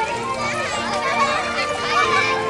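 A crowd of children chattering and calling out all at once, with music playing steady held notes underneath.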